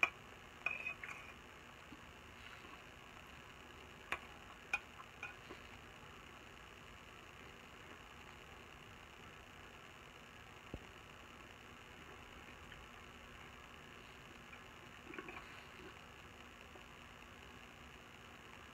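Faint, scattered clicks and small taps of eating from a stainless steel plate with a spoon, over a low steady room hum. Most of the clicks come about a second in and four to five seconds in.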